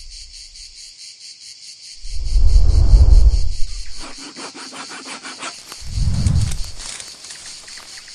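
Insects chirping in a steady, pulsing high trill, with two deep booms about two seconds in and six seconds in.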